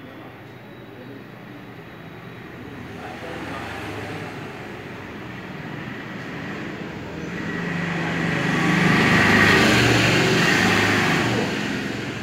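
A vehicle passing in the street, its engine and road noise building slowly to a peak about nine seconds in and then fading.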